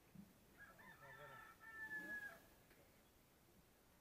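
A rooster crowing once, faintly, the call lasting about a second and a half.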